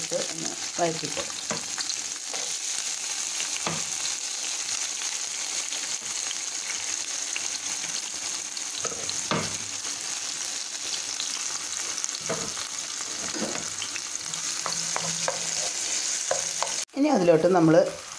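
Chopped green capsicum, tomato and garlic sizzling in hot oil in a frying pan, a steady hiss with a few light knocks from stirring. The sizzle cuts off suddenly near the end.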